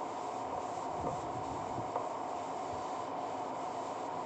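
Whiteboard duster rubbing back and forth across a whiteboard, a steady scrubbing over a constant background hum, with a couple of faint soft knocks.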